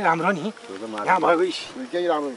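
People talking in the open air, their voices rising and falling in quick phrases.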